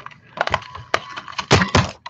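Handheld Vase Builder craft punch pressed down, its blades cutting vase shapes out of cardstock: a few sharp clicks and snaps, the loudest about a second and a half in.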